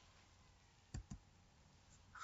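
Two quick computer-keyboard key clicks about a second in, with near silence around them: a keystroke that starts a new line.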